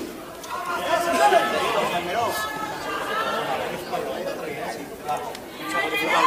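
Indistinct chatter of many voices talking over one another, with no clear music.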